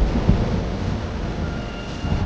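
A deep, thunder-like rumble fading away after a heavy boom, the kind of low impact used as a trailer transition. Faint steady high tones come in near the end.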